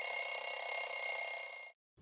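A bell sound effect ringing continuously, then cutting off abruptly near the end.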